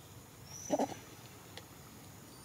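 A macaque gives one short call in two quick pulses, just under a second in. Birds whistle thinly in the background.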